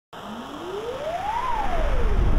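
Television static hiss that swells steadily, with a single tone gliding up and then, about a second and a half in, back down: a channel-logo intro sound effect.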